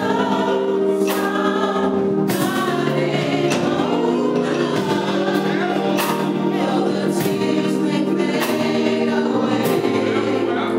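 A small gospel vocal group singing in harmony, holding long chords, over a regular beat that falls about every second and a quarter.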